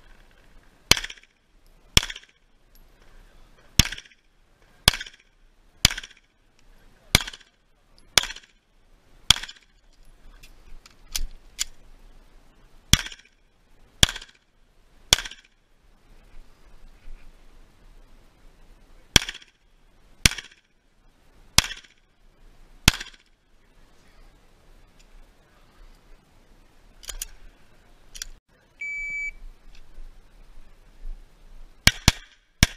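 Semi-automatic pistol shots at a steady pace of about one a second, in runs of three to eight with pauses of a few seconds between runs. There are fainter cracks in the gaps, and a short electronic beep near the end.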